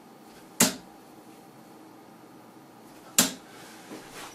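Two darts thudding into a bristle dartboard, one about half a second in and the next about two and a half seconds later, each a single sharp impact.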